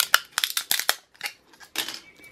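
Support material and brim of a freshly printed PLA+ 3D print being snapped and pulled off by hand. A rapid run of small sharp cracks and clicks comes in the first second, then a few more near the end.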